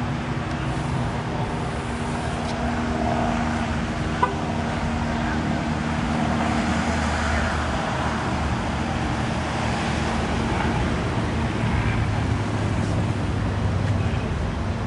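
Car engines running steadily, a continuous low hum with engine tones that fade after about five seconds. There is one sharp click about four seconds in.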